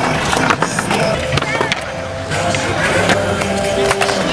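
Skateboard rolling on a concrete bowl, its wheels running on the surface with several sharp clacks of the board in the first half, over background music.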